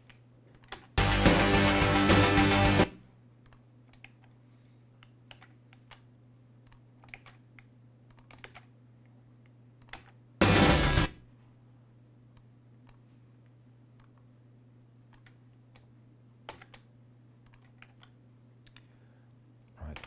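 Two short playbacks of a multitracked live drum recording (kick, snare, toms, cymbals) from a DAW session being edited, where a sampled snare is being lined up under the real snare. The first runs about two seconds from about a second in, the second is under a second, about ten seconds in. Between them come faint mouse and keyboard clicks over a low steady hum.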